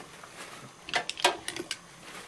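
Paper towel rustling and crinkling as an oil paintbrush is wiped down, with a cluster of short crackles and taps about a second in.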